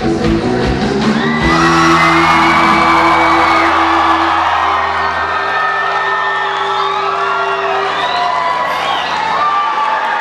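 Live rock band ending a song: the beat stops about a second and a half in and a final chord is held and slowly fades, while the audience whoops and cheers over it.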